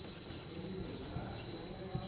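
Faint strokes and light taps of a marker tip writing on a whiteboard.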